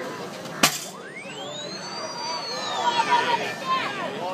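A padded mallet strikes a high striker (ring-the-bell strength tester) pad with one sharp whack about half a second in. Then the machine's electronic tone glides up and back down over about two seconds as it scores the hit.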